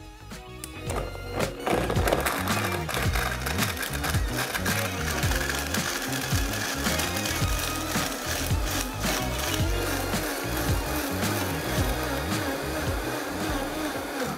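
Countertop blender running, starting about a second and a half in, puréeing dried mango pieces into mezcal until the fruit is fully emulsified.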